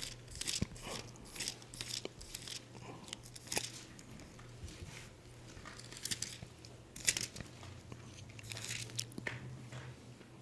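Bible pages being leafed through, faint thin-paper rustles coming in short irregular bursts, while a steady low hum runs underneath.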